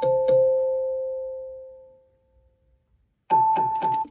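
Amazon Echo Show alarm chiming: a two-note electronic chime struck in a quick run that rings out and fades over about two seconds. After a second of silence a new run of strikes starts near the end and cuts off abruptly as the alarm is stopped.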